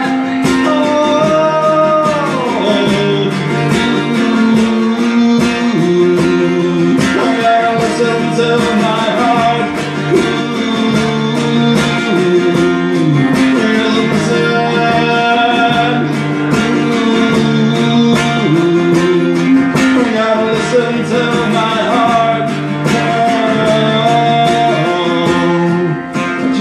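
Live acoustic guitar strummed in a steady slow rhythm through an instrumental passage of a song, the chords changing about every two seconds. A pitched melody line runs above the guitar and slides down in pitch about two seconds in.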